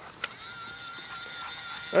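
Battery-powered, dog-shaped toy bubble blower's small electric motor whirring with a steady high whine, starting just after a click about a quarter second in.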